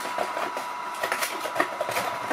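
Light rustling and clicking of objects being handled, a few short clicks through the two seconds, over a steady fan-like hiss with a faint high hum.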